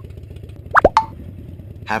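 Cartoon pop sound effects, quick upward-sliding plops, twice in fast succession and once more just after, over a steady low idling rumble of a cartoon motorcycle.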